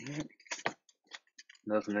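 A cardboard trading-card hobby box and its wrapped packs being handled, making short scattered clicks and crinkles. A man's voice is heard briefly at the start and again near the end, where it is the loudest sound.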